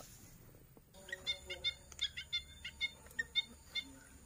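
Bird calls: a run of short, high chirps repeating several times a second, starting about a second in.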